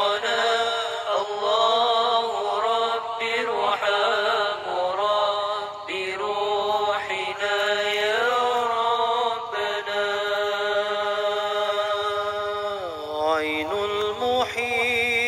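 Arabic devotional song (qasida): a voice chanting long, ornamented held notes with no clear words, the pitch wavering and then sliding down near the end.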